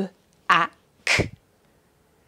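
A woman's voice sounding out a word phoneme by phoneme, 'b… a… ck'. There are three short, separate speech sounds with pauses between them, the last a breathy consonant burst.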